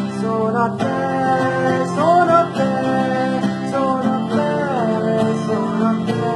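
A man singing while strumming an acoustic guitar.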